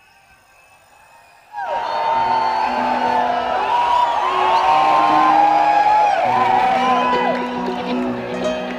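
A live band with keyboards and drums starts loudly about a second and a half in after a near-quiet pause, with steady bass notes under it and the audience whooping and cheering.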